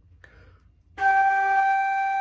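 Silver concert flute sounding one long, steady G, which starts about a second in after a faint breath and is held without a break.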